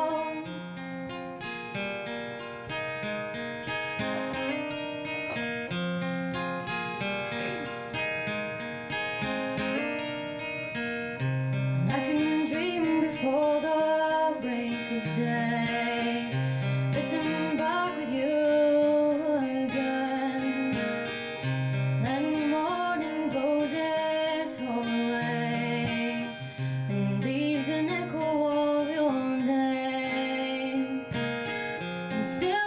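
Acoustic guitar playing a song accompaniment. About twelve seconds in, a gliding melody line joins it and recurs to the end.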